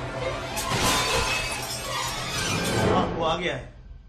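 Film action-scene soundtrack: a dense crashing, shattering din over music, with voices mixed in, dying away about three and a half seconds in.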